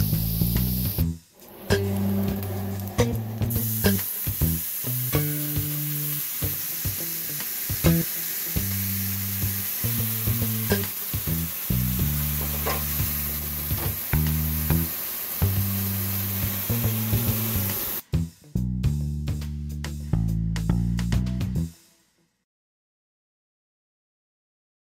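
Sliced mushrooms sizzling in a cast-iron skillet over a gas burner, under background music with a steady bass line. The sizzle stops about three-quarters of the way through, and the music runs on a few seconds more before cutting out near the end.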